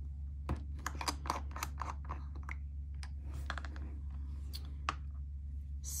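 Screw cap of a glass J. Herbin ink bottle being twisted open by hand: a run of small, irregular clicks and scrapes as the threads turn, over a steady low hum.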